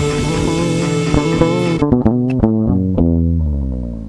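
An electric bass with a Seymour Duncan SMB-4A pickup, recorded direct, playing along with a rock band track. About two seconds in the band track stops, and the bass plays a few sharp, percussive notes alone. It ends on a low note that rings out and fades.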